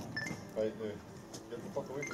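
Quiet talk and murmuring from a small group of people, with a couple of short high-pitched clinks near the start.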